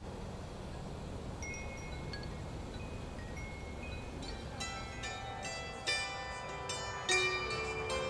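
Metal tube wind chime ringing: a few scattered notes at first, then many notes striking and overlapping from about halfway, over a low steady background noise.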